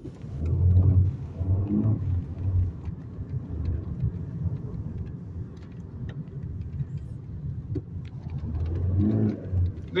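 Road and engine noise inside a moving car's cabin: a steady low rumble that swells about a second in and again near the end.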